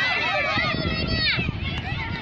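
Several children's high-pitched voices shouting and calling out at once, overlapping, with a low rumble underneath.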